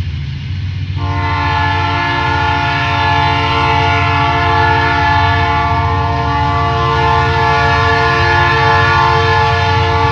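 Ferromex diesel locomotive blowing its air horn, a chord of several notes that starts about a second in and is held steadily, over the low rumble of the locomotive's diesel engine as the freight train approaches.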